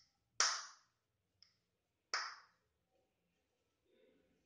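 Two sharp clinks of small metal fittings knocking together as they are handled, about a second and a half apart, with a faint tick between.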